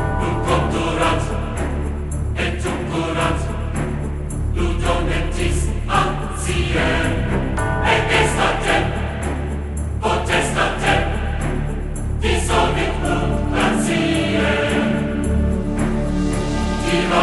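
Background music with a choir singing over a sustained bass.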